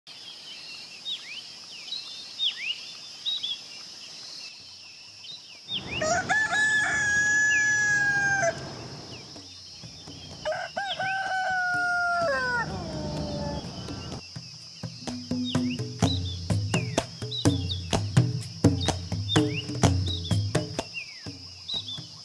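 Small birds chirping, then a rooster crowing twice, each a long held call, the second falling away at its end. From about two-thirds of the way in, a run of sharp strikes over a low pulse, about two a second.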